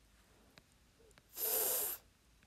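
A person breathing in sharply through the nose, one short noisy sniff about a second and a half in, close to the microphone. Before it come a few faint taps of a stylus writing on a tablet screen.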